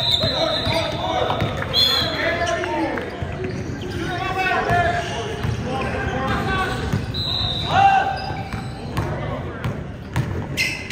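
Basketball bouncing on a hardwood gym floor, with sneakers squeaking sharply at the start, about two seconds in and again just past seven seconds, and players' voices echoing in the hall.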